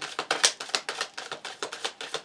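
A deck of tarot cards being shuffled by hand, a fast run of card clicks at about seven a second.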